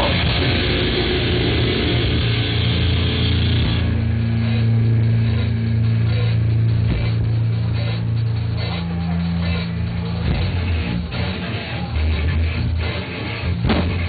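Heavy metal band playing live, with electric guitars and drum kit. About four seconds in, the dense cymbal-heavy playing drops back to long held low chords with only occasional drum hits.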